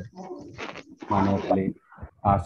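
A man's voice talking over a video-call link, two short phrases whose words are not made out.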